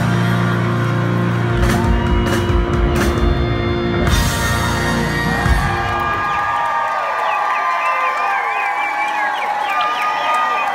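A live band with horns, electric guitar and drums holds a loud final chord, punctuated by a few drum hits, and stops about six seconds in. The crowd then cheers, whoops and yells.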